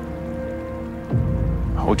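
Dramatic background score: several sustained tones held steady, joined about a second in by a deep low swell.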